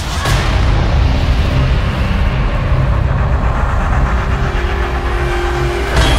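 Logo-sting sound effect: a loud, steady, deep rumble with hiss that starts suddenly, with a sharp hit right at the end.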